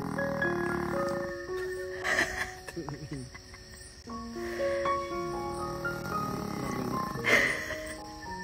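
A small dog snoring in its sleep, a noisy breath about every two and a half seconds, the loudest near the end. Background music with held, stepping notes plays throughout.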